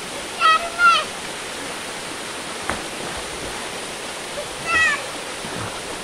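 Small waterfall pouring steadily into a rock pool, a constant rushing splash. High-pitched shouts cut through it twice, shortly after the start and again near the end.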